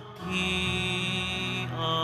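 Closing of a church offertory hymn on organ or keyboard: a brief dip, then a steady held chord, changing to a second held chord near the end.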